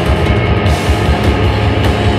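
A live rock band plays loudly: electric guitar, bass guitar and drum kit with cymbal strokes, all at once as a dense wall of sound.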